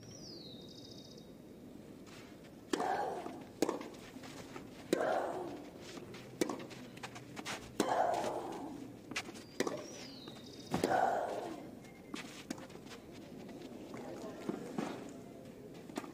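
Tennis rally on a clay court starting about three seconds in: racket strikes on the ball every second or so, with a player's grunt on her shots roughly every three seconds.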